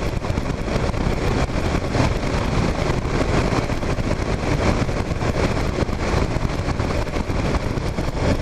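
Steady rush of wind and road noise over the running engine of a 2009 Kawasaki KLR 650, a single-cylinder dual-sport motorcycle, cruising at road speed. The wind hits the camera's microphone.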